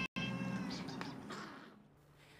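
Tabby-and-white cat meowing: one drawn-out meow that breaks off for an instant just after the start, then fades away over about a second and a half.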